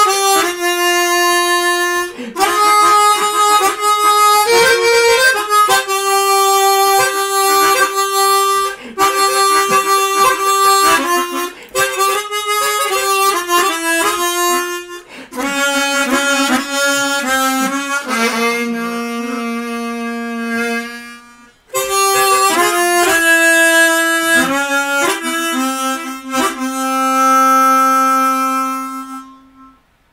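Chromatic harmonica playing a slow melody, one line of long held notes with short breaks. It ends on a long low note that fades away near the end.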